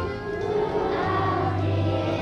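A children's choir singing with musical accompaniment.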